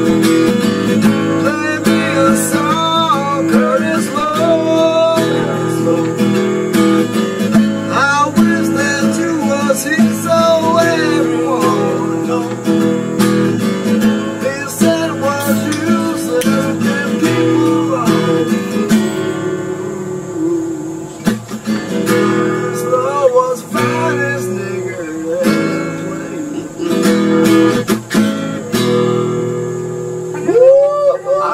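Acoustic guitar played solo, strummed and picked, with sparser, quieter playing around twenty seconds in.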